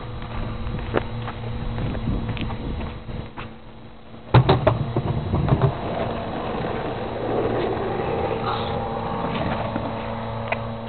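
Skateboard wheels rolling on asphalt, a steady rumble, with a sudden loud clack about four seconds in as the board hits something.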